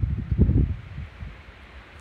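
Wind buffeting a phone's microphone: an uneven low rumble, strongest in the first second, then dying down to a faint hiss.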